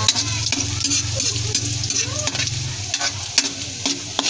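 Minced garlic sizzling in hot oil in a wok, with a metal spoon scraping and clicking against the pan as it is stirred. A low steady hum runs underneath and drops away about three seconds in.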